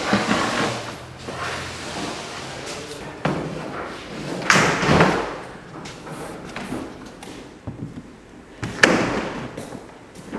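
Blue compressed-air line tubing being dragged across a concrete floor and pushed and bumped against a wall as it is fitted, giving rubbing scrapes and a few thuds. The loudest come about half a second in, around five seconds, and near the end.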